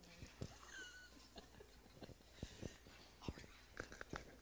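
Near silence with faint whispered voices and scattered soft knocks and footsteps as a crowd of people shuffles into place.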